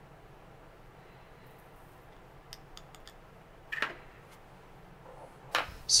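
A few faint clicks, then one sharper tap a little before four seconds in, from a plastic powder dipper working against the steel reloading die as a scoop of powder is poured down the die's funnel. The room is quiet apart from these.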